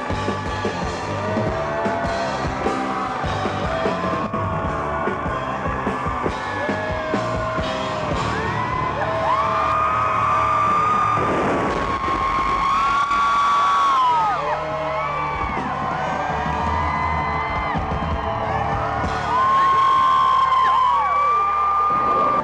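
Live rock-pop stage music with a man and a woman singing into microphones over a band. There are long held sung notes in the middle and again near the end, and a short burst of noise near the middle.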